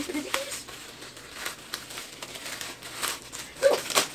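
Plastic mailer bag crinkling and crackling as it is handled and torn open by hand.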